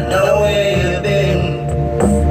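Music: a voice singing a gliding melody over steady low bass notes.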